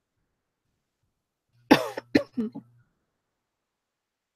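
A woman coughing: a quick run of about four coughs a little under halfway through, the first the loudest and longest, with near silence around them.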